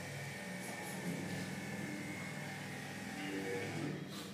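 Steady electrical hum and buzz over room noise.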